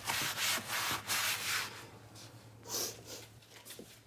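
A sponge rubbing and scrubbing a plastic windowsill in quick strokes, busiest in the first two seconds, then fainter, with one brief scrape about three seconds in.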